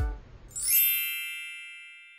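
The last beat of an electronic music track dies away, then about half a second in a bright, high chime sounds once and rings out, fading slowly.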